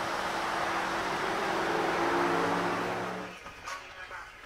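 Road traffic outside, with a passing vehicle's engine rising slightly in pitch over the traffic noise. It cuts off abruptly a little over three seconds in, leaving a much quieter room.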